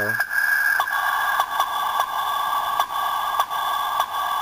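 Tinny, thin-sounding instrumental rap beat with no bass, likely played back through a small speaker. A regular click comes about every 0.6 seconds over a steady hiss.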